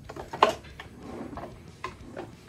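A sharp clack on a wooden tabletop about half a second in, then lighter clicks and another tap near the end, as small objects such as a wooden ruler are handled on the desk.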